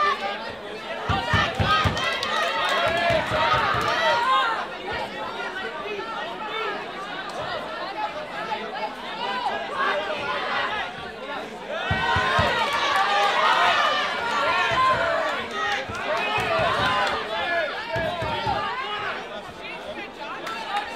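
Boxing spectators talking and calling out in a dense mix of voices, loudest a couple of seconds in and again around twelve to fifteen seconds in, with a few dull low thumps.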